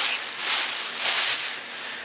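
Thin plastic shopping bag crinkling and rustling as it is handled, in a few swelling waves.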